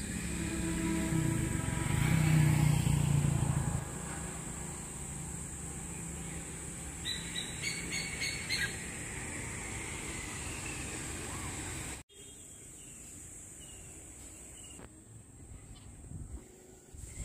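Outdoor background noise: a low rumble, louder in the first four seconds, under a steady high-pitched tone, with a few short chirps around eight seconds in. The sound drops suddenly about twelve seconds in and stays quieter after that.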